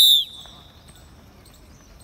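A sports whistle blown in one sharp, high-pitched blast that cuts off a quarter of a second in, its tone dipping slightly as it ends. A faint trace of the tone lingers until about a second in.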